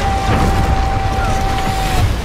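Film sound effect of a blast of snow bursting out of a portal ring: a loud, deep rushing rumble with a single steady high tone held over it.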